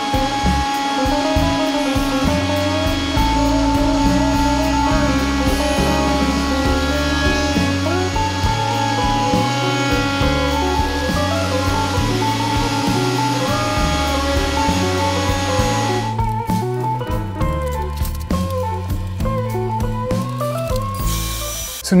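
Background music with a stepping bass line over a router table running with a steady whine as it cuts a quarter-inch roundover along high-density polyethylene (HDPE) boards. The router stops about 16 seconds in, and the music goes on alone.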